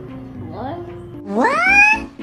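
A single loud, high-pitched cry that sweeps sharply upward in pitch over the last two-thirds of a second, after a fainter sliding sound before it.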